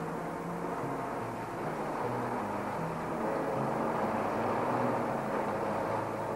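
A steady rushing noise that swells slightly toward the middle, with low held notes stepping up and down in pitch beneath it.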